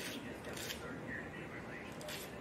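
Wire bristles of a narrow rougher scraping across the back of a cast plastic deer nose in a few short strokes. The plastic is being scuffed rough so that five-minute epoxy will bite.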